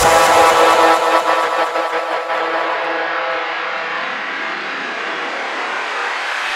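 House music breakdown in a DJ mix: the kick drum and bass drop out, leaving held synth chords over a hissing wash that slowly dulls as its treble is filtered away.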